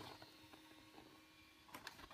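Near silence: room tone with a faint steady hum and a couple of faint clicks near the end.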